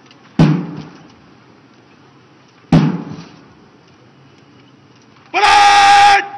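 Two sharp crashes about two seconds apart, a parade contingent's drill movement struck in unison, then near the end a long, loud shouted word of command from a contingent commander.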